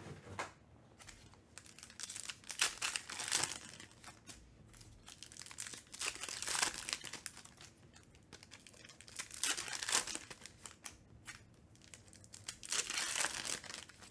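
Foil trading-card pack wrappers being torn open and crinkled by hand, in about four bursts of crinkling a few seconds apart.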